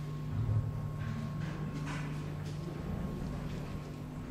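Steady low hum of machinery in a brewery tank cellar, with a few faint footsteps and knocks as people walk past the stainless-steel tanks.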